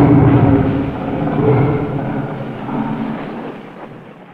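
Geronimon's roar, a kaiju sound effect from Ultraman: one long, low roar that swells once more near the end and then fades away.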